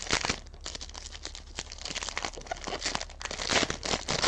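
Foil wrapper of a Panini Prizm football card pack being torn open and crinkled by hand: an irregular run of crackles, loudest shortly before the end.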